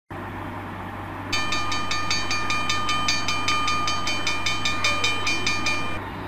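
A low steady rumble and hum, joined about a second in by a held high tone and an even rhythmic clatter of about four beats a second.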